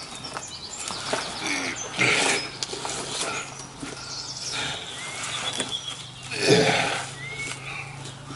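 A man grunting and breathing hard with effort as he climbs a tree trunk, with his boots and clothes scraping and rustling against the bark. The loudest grunt comes about six and a half seconds in.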